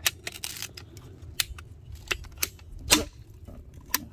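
Red ratcheting pipe cutter clicking as it squeezes through the plastic housing of a water-purifier sediment filter cartridge. A sharp snap about three seconds in marks the housing cracking apart.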